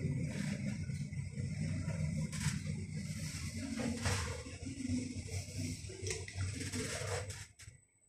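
Schindler 5400 lift car travelling upward: a steady low running rumble heard from inside the cabin, with a few light clicks. It dies away near the end as the car slows to a stop.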